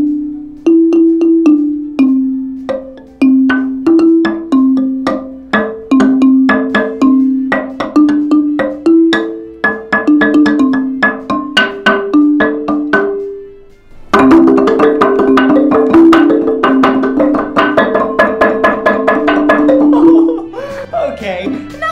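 Large wooden-bar xylophone, a box-resonator marimba, struck with soft mallets: a slow tune of single low notes, about two a second. About 14 seconds in it turns louder and much faster, a rapid run of notes with both mallets.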